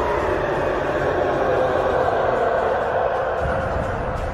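Attack Titan's roar from the anime's English dub: one long, loud roar that sets in suddenly and holds steady, easing off near the end.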